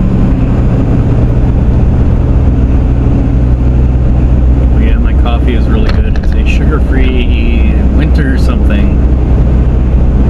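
Steady road and engine noise inside a moving car's cabin, a low even hum. From about five seconds in, a voice talks over it.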